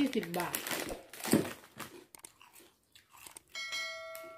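Crinkling and crunching from a plastic bag of crisp fried pork rinds being handled, after a brief vocal sound at the start. A chime of several steady ringing tones sounds about three and a half seconds in, with the on-screen subscribe-button animation.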